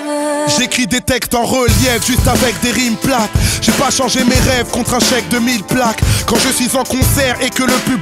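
Hip hop track: a held sung note ends about half a second in, then rapping begins over a beat that kicks in a couple of seconds in.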